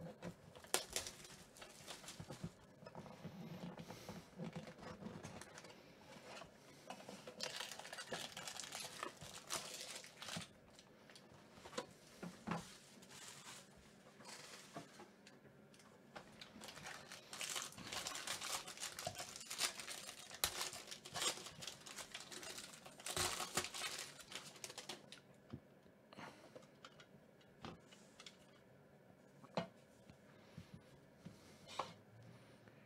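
Plastic shrink wrap being torn off a sealed trading-card box and a foil card pack being torn open, both crinkling and crumpling in the hands. The crinkling comes in uneven stretches and quietens near the end as the cards are handled.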